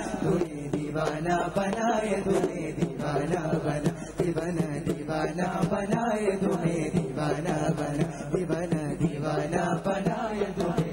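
Qawwali music: voices singing a drawn-out, wordless vocal line over a steady percussion beat.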